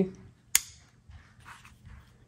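A single sharp metallic click about half a second in: the thumb safety of a Ruger Mark IV 22/45 Lite pistol being flicked on. Faint rubbing of hands handling the pistol follows.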